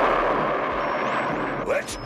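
Cartoon sci-fi sound effect: a loud rushing noise that slowly fades away, with a voice starting near the end.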